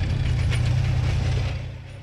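Tracked self-propelled artillery gun running, a heavy low engine rumble with mechanical clanking and ratcheting from its tracks and gear, fading shortly before the end.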